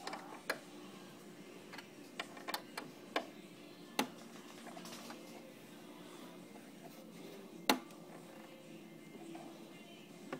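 Screwdriver turning screws in a metal table bracket: scattered sharp metal clicks, the loudest about four seconds in and again near eight seconds, as the screws are tightened to firm up a wobbly table.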